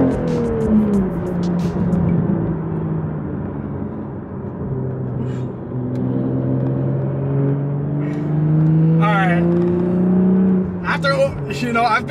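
A manual A90 Toyota Supra's turbocharged 3.0-litre inline-six heard from inside the cabin while driving. The revs fall away as he shifts at the start, then climb steadily under acceleration, and drop again when he lifts off near the end.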